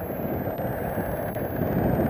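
Steady low rumble of distant road traffic mixed with wind on the microphone, growing a little louder near the end.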